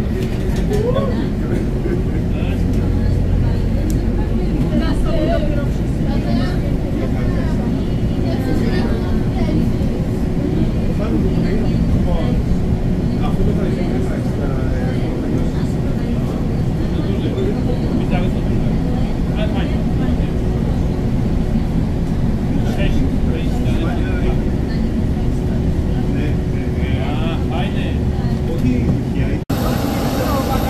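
Airport apron bus driving across the apron, heard from inside the cabin: a steady engine drone with a constant tone over it. It breaks off abruptly just before the end.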